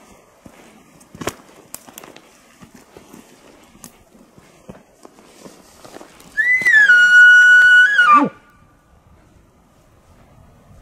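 Elk bugle, loud and close: a high whistling note starting about six seconds in, held steady for under two seconds, then dropping steeply in pitch as it ends. Before it, footsteps and small twig snaps on the forest floor.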